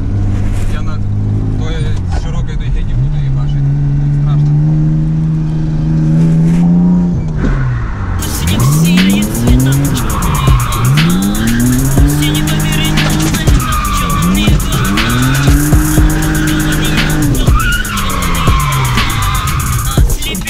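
BMW E30's engine revving up and falling back again and again, heard from inside the cabin, with tyre squeal as the car slides. Music comes in about eight seconds in.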